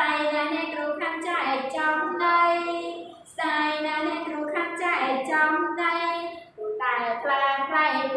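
A woman singing a children's action song in Khmer, in short phrases of held notes with brief breaths about three seconds and six and a half seconds in.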